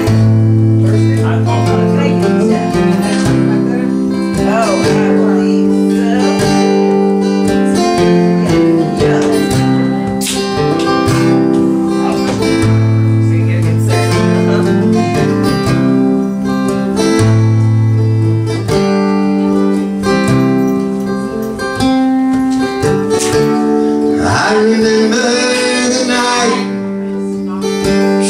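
Acoustic guitar strumming the chords of a slow waltz, an instrumental break with no singing.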